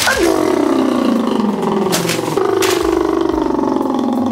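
A single loud, drawn-out, rough-edged yell that slides slowly down in pitch and holds without a break, with two short sharp smacks about two seconds in.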